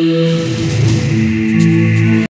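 Instrumental background music with held, steady notes.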